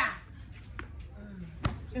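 A pause between a man's loud shouts of "Hey!", with one sharp knock about one and a half seconds in.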